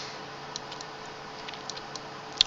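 A few faint, short computer mouse clicks over steady microphone hiss with a faint low hum.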